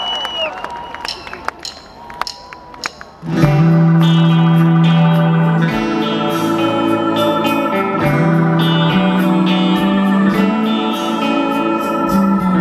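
About three seconds of quieter crowd noise, then live band music starts suddenly and loudly: acoustic guitar strumming over sustained keyboard chords.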